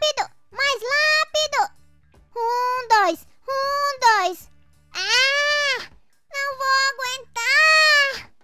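A high-pitched, child-like cartoon voice making a run of short, drawn-out vocal cries and exclamations that swoop up and down in pitch, over background music.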